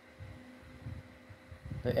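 Quiet room tone with a faint steady hum. A man's voice begins near the end.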